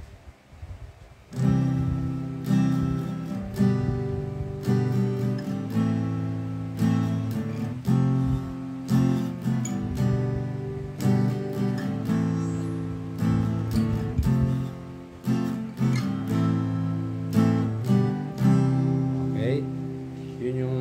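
Fender cutaway acoustic guitar strummed in a steady rhythm, starting about a second in, playing the four chords C, G, A minor and F in a down, down-up, down-up strumming pattern.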